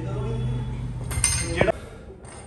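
Loaded EZ curl bar set down on the gym floor, its metal weight plates clinking just past halfway, after a steady low voice-like sound.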